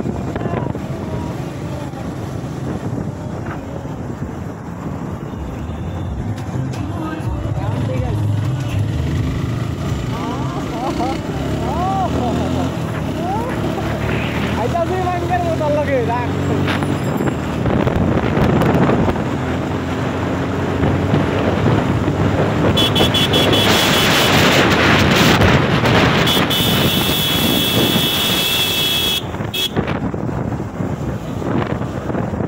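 Motorcycle engine running under a rush of wind on the microphone while riding at about 50 km/h; the rush grows louder and harsher in the last several seconds.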